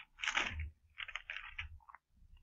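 Thin Bible pages being turned: two short, crunchy rustles, the second about a second after the first.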